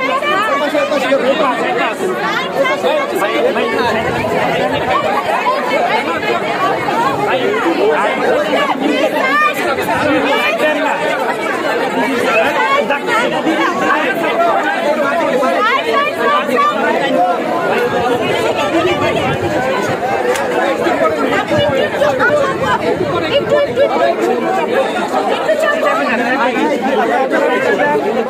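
Dense crowd chatter: many voices talking and calling over one another at once, loud and steady throughout.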